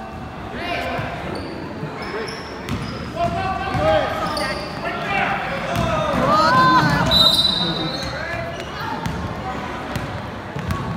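A basketball being dribbled on a hardwood gym floor, with shouting voices of players and spectators echoing in the gym, loudest just past the middle.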